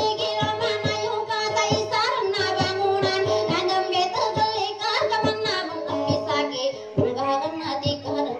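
A Dayunday song: a voice singing over instrumental accompaniment with held tones and a regular beat.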